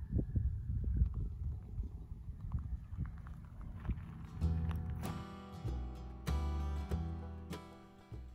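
Low, gusty rumbling of wind buffeting a phone microphone outdoors, with scattered knocks. About halfway through, background music of sustained chords comes in and carries on.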